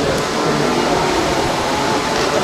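Indistinct chatter of several voices over a steady background noise.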